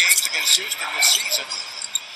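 Basketball game broadcast audio playing in the room: a commentator talking faintly over steady arena crowd noise, with short high-pitched squeaks scattered through.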